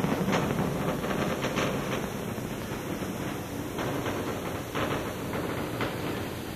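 Space Shuttle Columbia's solid rocket boosters and main engines during ascent: a steady, noisy rumble that slowly fades as the shuttle climbs away.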